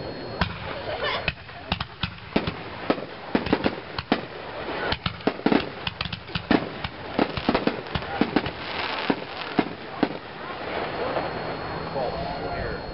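Aerial firework shells bursting: a long run of sharp, irregular bangs and pops, several a second, dying away about ten seconds in.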